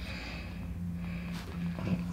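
Low steady hum with a breath through the nose near the start and one faint brief click about one and a half seconds in. No joint pop is heard: the jaw (TMJ) adjustment does not release the joint.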